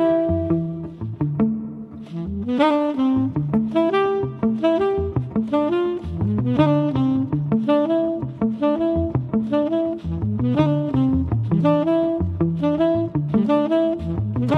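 Studio jazz recording: tenor saxophone repeating a short melodic figure over piano, guitar, bass and drums, the phrase coming round about every second and a half.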